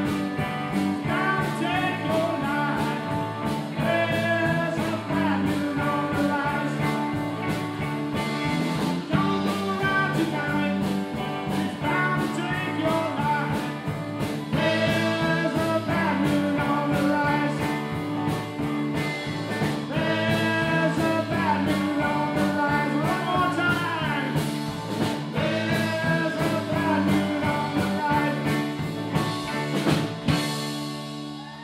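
Live band playing a song on electric guitars, bass guitar and drum kit, with a man singing lead over a steady drum beat.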